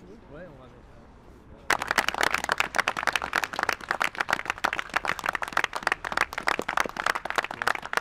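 A small group of people clapping, starting suddenly about two seconds in and running on as a dense patter of hand claps until just before the end.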